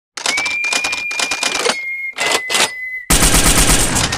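Rapid, evenly spaced clicking sound effect, about eight clicks a second, with a steady high tone running through it. About three seconds in it turns into a louder, denser rattle with deep thuds.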